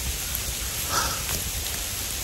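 Heavy rain falling through woodland: a steady, even hiss of a downpour.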